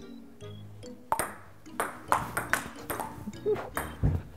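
Ping-pong rally: the ball clicks sharply off the paddles and the table in quick succession, a hit about every half second from about a second in.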